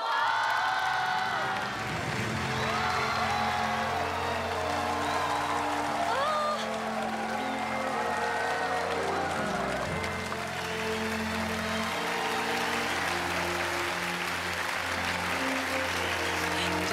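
Background music with long held notes, over excited audience voices crying out, then a studio audience's applause building through the second half.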